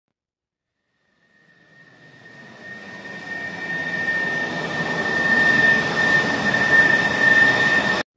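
Jet airliner engine sound effect: silence, then a steady high whine over a broad engine noise that swells from faint to loud and cuts off abruptly at the end.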